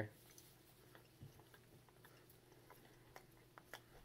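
Faint chewing of a bite of soft oatmeal muffin: a scattering of small, soft mouth clicks, close to silence.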